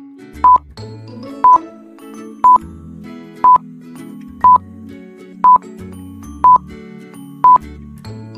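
Quiz countdown timer beeping once a second, eight short, loud electronic beeps at one steady pitch, over light background music.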